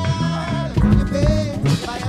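Live electronic dub music: a drum-machine beat with deep bass notes under a sliding lead melody line.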